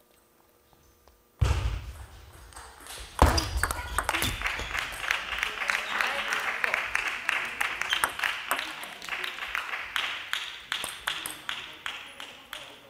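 Table tennis ball knocked back and forth between rubber paddles and bouncing on the table in a rally: a quick series of sharp pocks, the loudest about three seconds in. Voices carry through the hall behind them.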